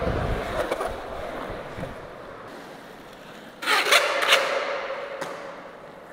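Skateboard wheels rolling on a smooth concrete floor, the rumble fading over the first two seconds. About three and a half seconds in comes a short burst of scraping as the wheels skid sideways in a powerslide, which then trails off.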